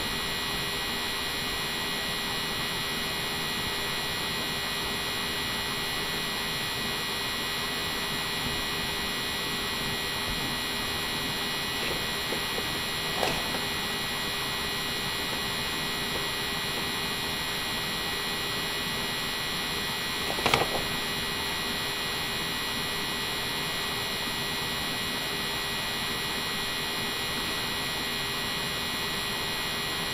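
Steady electrical hum and hiss of the recording setup, with no speech. Two short, faint sounds break it, a little before halfway and again about two-thirds of the way through.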